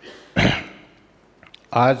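A man clears his throat once, a short, sharp burst into a podium microphone about half a second in, before resuming speech near the end.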